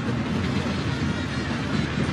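Stadium crowd noise from a football match: a steady, loud din of many voices with no single sound standing out.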